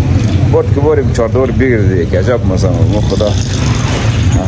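A man talking, with a steady low rumble underneath, typical of street traffic.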